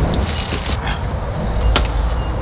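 Potted plants in plastic pots and plastic sleeves being handled and carried: rustling and scraping over a low rumble, with one sharp knock near the end.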